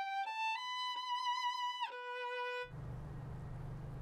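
Solo violin, an 1870s German instrument, bowing a slow melody of held notes that step upward, then dropping to one lower long note that stops about two-thirds of the way through. A low steady hum follows.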